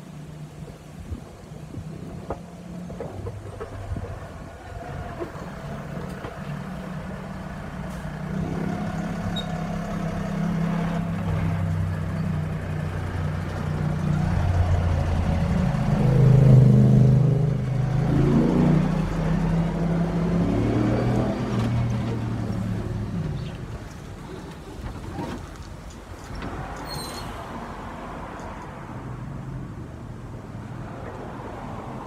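A big truck's engine running as it manoeuvres, its note shifting up and down, growing louder to a peak a little past halfway and then fading away.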